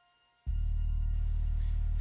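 A steady low hum starts abruptly about half a second in and holds unchanged.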